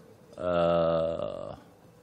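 A man's drawn-out hesitation sound, a single held "eeh" at a steady low pitch lasting just over a second, as he pauses mid-sentence.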